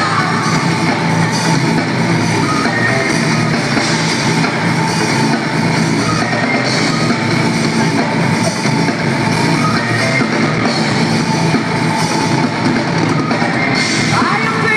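A live rock band playing loudly without a break: a drum kit with cymbal crashes driving under amplified electric guitars.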